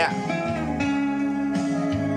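Guitar music playing back from a Sony reel-to-reel tape recorder, heard through external speakers that have just been switched in place of its built-in ones.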